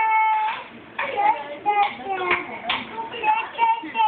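A toddler's high voice singing or chanting in short notes, the first one held for about half a second.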